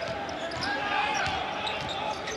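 Arena crowd noise under a basketball being dribbled on a hardwood court.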